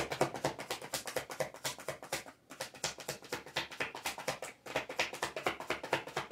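A deck of tarot cards being shuffled by hand: a rapid run of light card flicks and clicks, with two brief pauses, about two and a half and four and a half seconds in.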